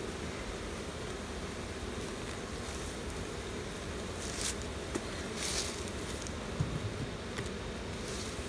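Honeybees buzzing around an open hive, a steady hum. A couple of brief rustling hisses come about halfway through.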